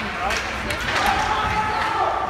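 Hockey sticks and puck clacking on the ice and boards in a youth ice hockey game, several sharp knocks in the first second. Spectators' voices call out over it, one held shout in the second half.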